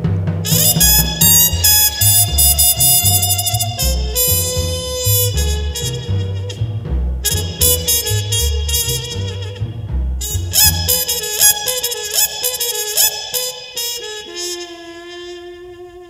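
Jazz trumpet playing a mournful melodic line with a big band, over a pulsing low drum pattern that drops out about eleven seconds in. The trumpet then ends on a held note that fades away.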